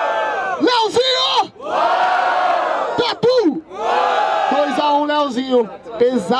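A crowd shouting and cheering in three long bursts, with a single voice shouting in between: the audience making noise to vote for a rapper at the end of a freestyle battle.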